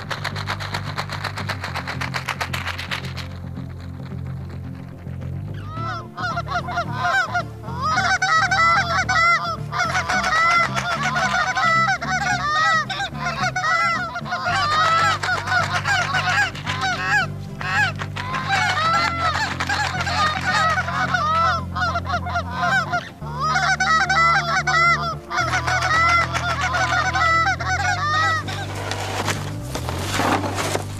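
Canada goose honking and clucking, many overlapping calls in quick succession, beginning about six seconds in with a short lull around two-thirds of the way through. A low, steady music bed runs underneath.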